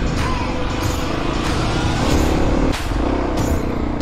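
Kawasaki KLX250's single-cylinder engine running as the bike rides single track, mixed with background music that has a steady beat.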